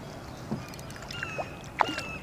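A hooked channel catfish splashing and thrashing at the water's surface beside a kayak during the fight, with a few brief splashy clicks. A few short high chirps come in about a second in.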